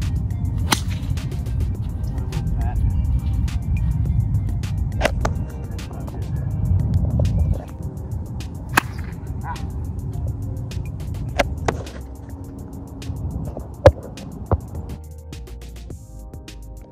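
Golf iron shots, each a sharp click of the clubface striking the ball: the first, with a 5 iron, comes about a second in, and the second near the middle. More sharp clicks follow, the loudest near the end. Wind rumbles on the microphone through the first half, under background music.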